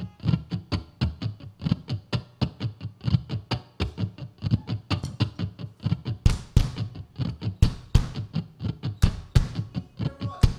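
Live band music: an acoustic guitar plays a steady rhythmic strummed figure, about four strokes a second. From about six seconds in, sharp percussive hits join in.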